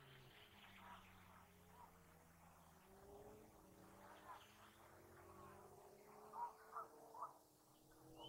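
Near silence with a few faint, short animal calls about six to seven seconds in.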